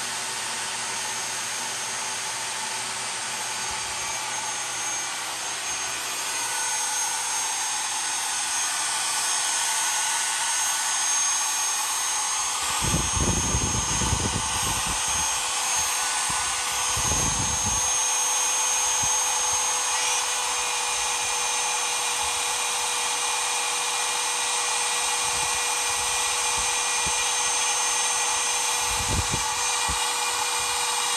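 DeWalt trim router on a homemade gantry CNC machine spinning at high speed with a steady high whine, its bit engraving the outline of an instrument panel cutout into a test sheet. A few dull low bumps come in around the middle and near the end.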